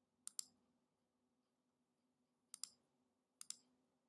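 Three computer mouse clicks, each a quick press-and-release pair, picking letters on an on-screen keyboard: one just after the start and two more close together near the end, over near silence.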